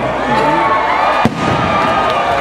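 Large rally crowd cheering and shouting, with a single sharp bang a little past halfway.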